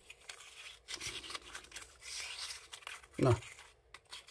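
Tailcap being screwed onto an anodized aluminium flashlight body: a soft, scratchy rasp of metal threads turning, with a few small clicks.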